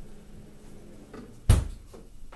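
A single loud thump about one and a half seconds in, with a few faint clicks before it.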